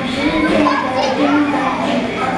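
Many young children's voices at once, calling out and chanting together.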